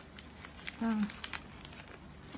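Wrapping paper crinkling in the hands with scattered short crackles as it is folded around a small bouquet of paper flowers.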